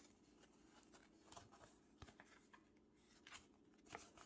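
Near silence: room tone with a few faint rustles and clicks of a paper sticker sheet being handled.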